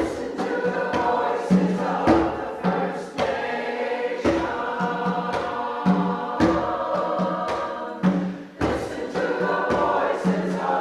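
A mixed church choir sings a piece, with struck accompaniment notes beneath the voices every second or two.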